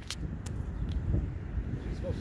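Wind buffeting the camera microphone: a low, uneven rumble, with a few faint clicks in the first second.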